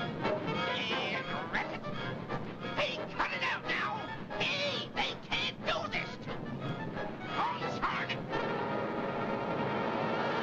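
Cartoon orchestral score with repeated high, gliding cries and squeals from the mice caught up in the harvesting machine. About eight seconds in, this gives way to a steady humming drone.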